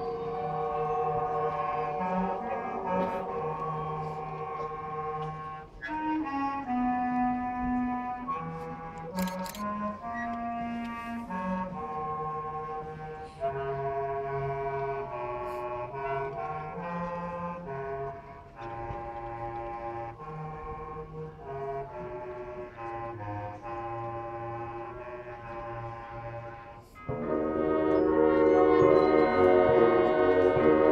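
High school marching band playing: a soft passage of held brass chords over a moving low line, then the full band comes in much louder near the end.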